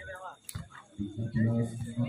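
A man's voice with drawn-out, held sounds from about a second in, and a single sharp knock about half a second in.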